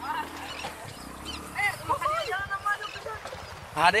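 Young men's voices shouting and laughing excitedly, in loud bursts about one and a half seconds in and again near the end, with a low, rapid, steady pulsing rumble underneath. Background music fades out in the first second or so.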